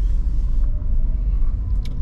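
Steady low rumble of a car's engine and tyres heard from inside the cabin while driving slowly, with a faint hiss in the first half-second as an oncoming minibus passes close alongside.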